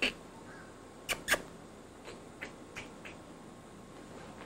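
A person making short, sharp kissing clicks with the lips to call a deer: two loud ones about a second in, then a few fainter ones at even spacing.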